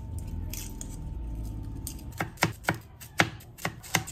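Kitchen knife chopping garlic cloves on a plastic cutting board: about six sharp, uneven chops in the second half, after a stretch of low rumble.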